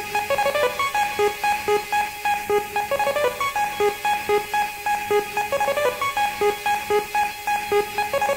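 Rave music from a 1994 DJ set recorded on cassette: a fast repeating riff of short plucked synth notes, about four or five a second, with no heavy kick drum under it.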